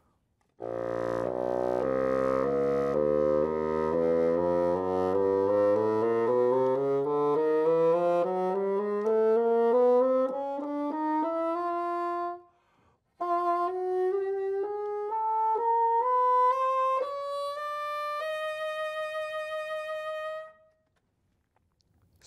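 Bassoon playing a slow scale upward, note by note, from the bottom of its range. After a short breath about halfway through it carries on into the high register, where the tone grows thinner, and ends on a held high note.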